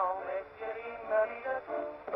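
Music playing from a disc record on an acoustic gramophone, a tune of held notes.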